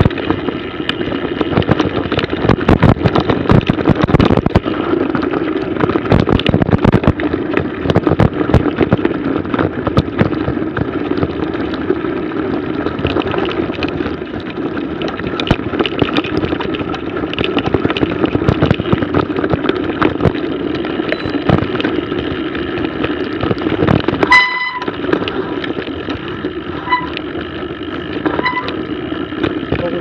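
Mountain bike riding over a snow-covered trail, heard from a camera mounted on the bike or rider: a constant rattling rumble of tyres and frame with frequent sharp knocks over bumps, and wind on the microphone. A brief ringing tone sounds a few seconds before the end, followed by two short tones.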